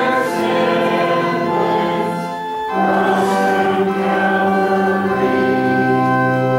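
Congregation singing a hymn with organ accompaniment, in long held notes. There is a short break between lines about two and a half seconds in, then a new chord.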